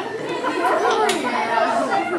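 A group of children chattering all at once, many voices overlapping.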